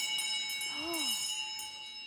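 A doorbell struck just before, ringing on with a clear, steady chime that slowly fades.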